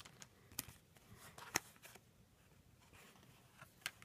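Faint rustling of trading cards being handled, with a few sharp ticks of card edges spaced a second or more apart.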